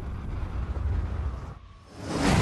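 A deep, low rumble of trailer sound effects that fades away about a second and a half in.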